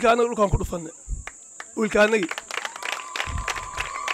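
A man speaking in short phrases into a handheld microphone, over a steady high insect drone. A steady whistle-like tone comes in about three seconds in.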